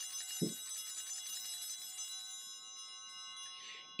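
Altar bells rung at the elevation of the host after the words of consecration: a cluster of high, shimmering chimes that die away by about three and a half seconds in. A soft knock about half a second in as a metal bowl is set down on the altar.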